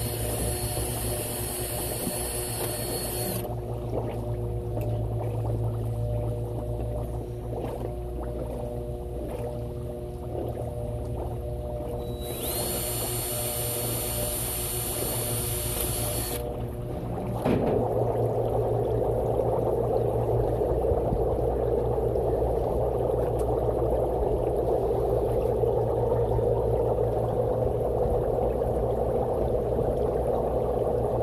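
Cordless drill whining in two bursts of about four seconds each, one at the start and one about 12 seconds in, as a sixteenth-inch bit drills air holes into a submerged PVC diffuser pipe, over a steady machine hum. From about 17 seconds in, a steady, louder bubbling of air through the water takes over.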